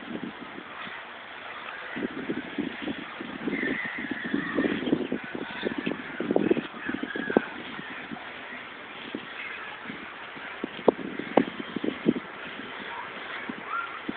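A large tractor tire being pushed upright across grass: irregular scuffing and rustling, with a few short, sharp knocks around eleven to twelve seconds in.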